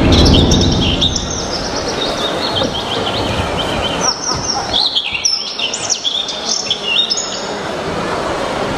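Birdsong recording with many quick chirps and trills, played over the hall's sound system as the opening of the routine's soundtrack, over a loud, steady, noisy background.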